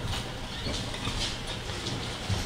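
Room tone with a steady low hum and a few faint, light clicks.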